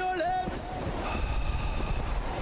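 Music with a held sung or played note that ends about half a second in, giving way to a steady rushing noise with a low rumble.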